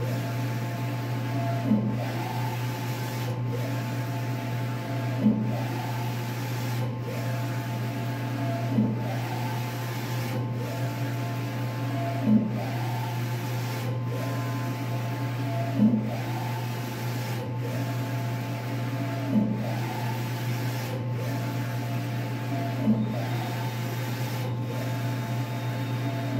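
Wide-format inkjet printer with an XP600 printhead printing uni-directionally: the carriage motor whines up and down as the head sweeps across, with a short knock about every three and a half seconds at the end of each pass, over a steady low hum.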